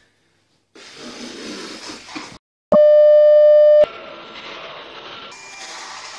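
A loud, steady electronic beep lasting about a second, switched on and off sharply, with a low buzzy pitch rich in overtones. Before and after it, stretches of hiss-like room noise start and stop abruptly.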